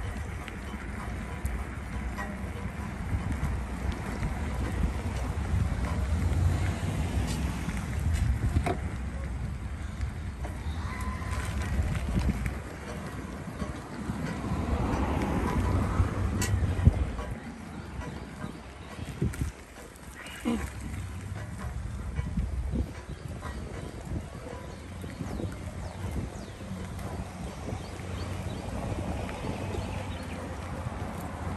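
Bicycle riding along a paved path: wind rumbling on the microphone over tyre noise, with scattered clicks and knocks. The rumble eases a little past halfway.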